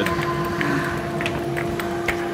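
A steady hum with a fainter, higher tone above it, over a low, even background noise.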